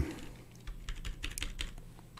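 A quick, irregular run of light clicks from keys pressed on a computer keyboard.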